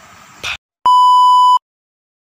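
A single loud electronic beep: one steady, high tone lasting under a second, like a censor bleep. Just before it, a short bump of handling noise and then dead silence as the recording cuts off.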